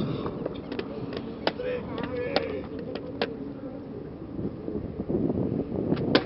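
Inline skates rolling and grinding along a concrete ledge, a rough steady scraping with several sharp clicks of the skates striking the concrete. Faint voices in the background.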